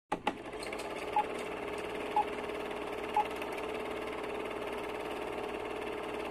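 Film-projector sound effect for a title card: a steady mechanical whirr with a couple of clicks as it starts, and three short high beeps a second apart.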